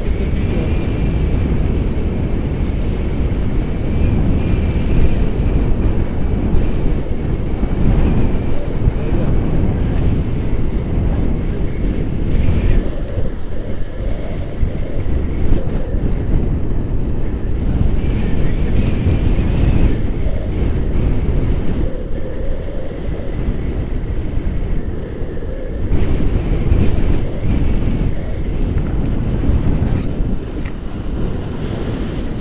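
Wind buffeting the camera's microphone during paraglider flight: a loud, steady low rumble that swells and eases.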